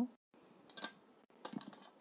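A few light clicks and taps of a clear plastic rolling ruler being lifted and moved across the drawing paper: one about a second in, then a short cluster near the end.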